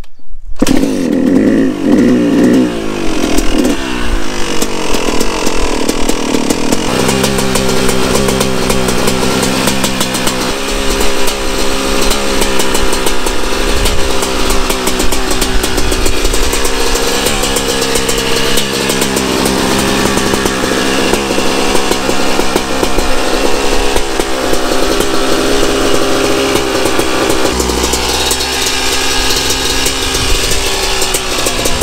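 Yamaha YZ250 two-stroke single-cylinder dirt bike engine running: revved unevenly for the first few seconds, then settling to a steady idle from about seven seconds in, with occasional small blips of throttle. The owner suspects it is running too lean, possibly from too much air in the carburettor.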